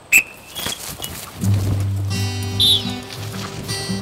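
A short, sharp high-pitched sound just at the start, then acoustic guitar music comes in about a second and a half in and carries on steadily.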